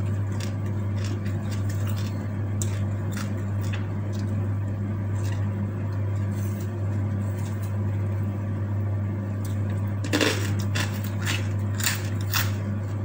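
Close-up eating sounds: chewing with small wet clicks and crunches scattered throughout, over a steady low electrical hum. A louder crunchy crackle comes about ten seconds in.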